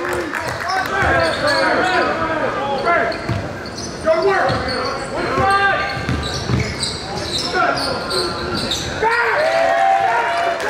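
Live game sound in a gym: a basketball being dribbled on a hardwood court, sneakers squeaking, and players' voices calling out, echoing in the hall.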